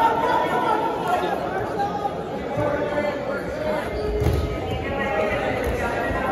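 Overlapping voices of spectators and coaches talking and calling out in a gymnasium during a wrestling bout, with no single clear speaker.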